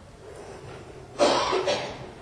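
A single cough a little over a second in, loud and short, trailing off with a smaller second push, over faint room noise.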